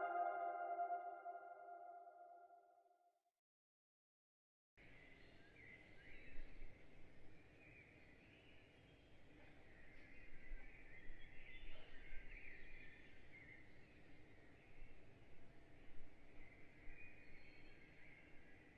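A held ambient music chord fades out over the first three seconds into dead silence. About five seconds in, faint room ambience cuts in abruptly, with irregular high chirping running through it like distant birdsong.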